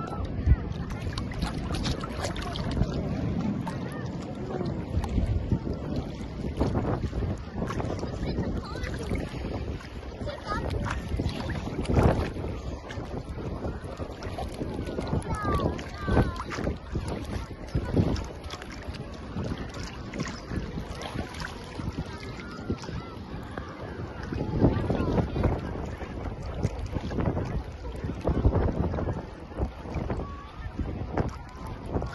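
Sea water splashing and lapping right at the microphone, with wind buffeting it and sharper splashes now and then, the loudest near the start, about halfway through and near the end.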